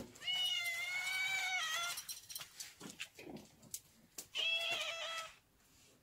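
Domestic cat meowing twice: a long meow of nearly two seconds that falls a little in pitch at its end, then a shorter meow about four seconds in.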